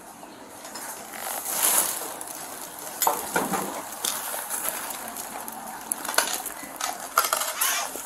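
Rustling and small metallic clinks from a police officer's gear, picked up by his chest-worn body camera as he walks, with a few sharper clinks or knocks about three seconds in and again near the end.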